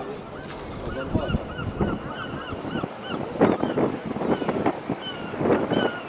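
Gulls calling in a rapid series of short, yelping calls over harbour background noise, with louder noisy bursts about three and a half and five and a half seconds in.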